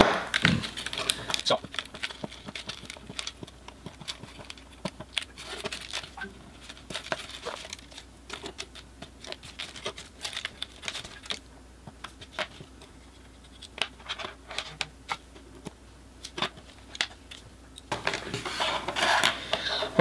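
Jumper wires and small electronic modules being pulled out of a solderless breadboard and handled on a tabletop: irregular small clicks, snaps and scrapes.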